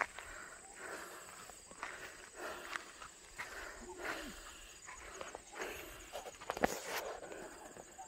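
Footsteps crunching on a gravel track at an unhurried walking pace, with a few short, soft calls from a turkey among them, one a brief falling note about halfway through.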